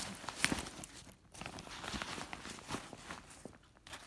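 Nylon shoulder bag being handled and turned over: an irregular run of soft rustles, scuffs and light taps from the fabric and its fittings, loudest about half a second in.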